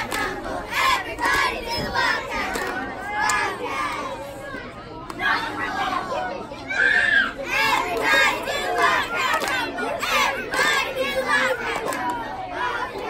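Sideline crowd shouting and cheering, many voices overlapping with loud individual shouts.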